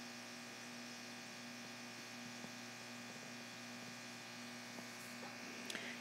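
Faint, steady electrical hum with a low hiss: the recording's background noise, with nothing else happening.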